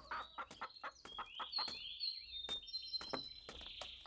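Chickens clucking, with birds chirping in short, high calls from about a second in.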